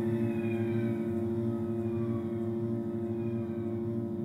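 Ambient cello music: low notes held as a steady drone, layered with faint higher tones that slowly slide downward.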